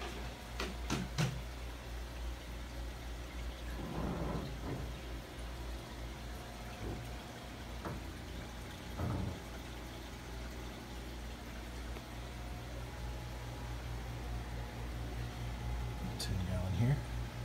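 Steady hum and running water from the tanks' pumps and filters, with a few light clicks about a second in and a couple of faint muffled knocks later on.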